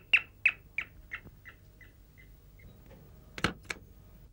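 An electronic doorbell giving a run of short, bird-like chirps about three a second, fading away over two and a half seconds. It is followed by two sharp clicks of a door latch and handle as the front door is opened.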